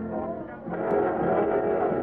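Dance band playing the programme's opening music in a muffled old radio recording. The music swells about two-thirds of a second in.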